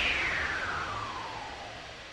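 A whoosh sound effect closing a promo film's electronic soundtrack: a noisy sweep that glides steadily down in pitch and fades out.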